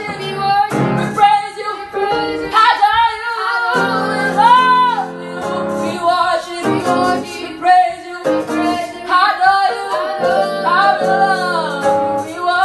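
A boy singing a gospel worship song unaccompanied in a high voice, phrase after phrase with sliding melodic runs and long held notes.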